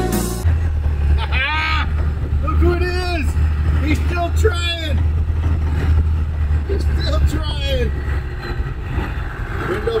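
Cummins diesel engine of a Jeep driving uphill, a steady low drone heard from inside the cab; it starts about half a second in and falls away around seven seconds in, with voices over it.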